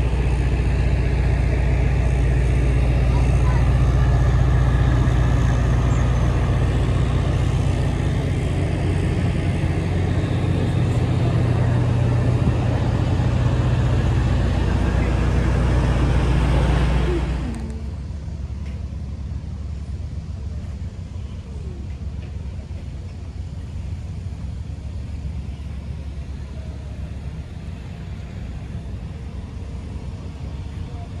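A large diesel engine idling steadily close by, a deep even drone that cuts off abruptly a little over halfway through, leaving a quieter steady low hum with faint background voices.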